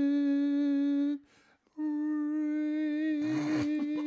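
A man's voice holding a long, steady sung note, breaking off about a second in and taking up the same note again after a short pause. A burst of laughter sounds over it near the end.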